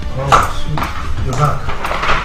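High-heeled sandals clicking on a tiled floor as a woman walks, about two sharp steps a second.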